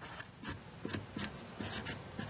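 Fine-tip felt marker writing on painter's tape stuck to a plastic gas can: a quick series of short pen strokes.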